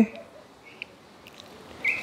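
Quiet pause with faint room tone, broken by a soft tick and a couple of faint, brief high chirps.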